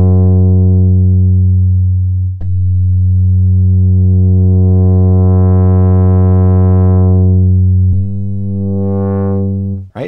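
A held low synth-bass note from a sampler patch on a Maschine+, its tone going darker and brighter as a low-pass filter's cutoff is swept down and back up. The note is struck again about two and a half seconds in and again near eight seconds.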